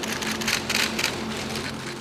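Steady hiss with scattered crackle and a faint low hum: the room noise of a live stage recording between lines.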